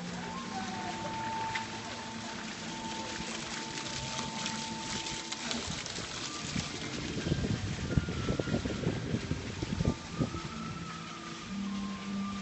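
Soft background music with long held notes, over the splashing of a small fountain in a pool. From about seven seconds in, irregular low bumps.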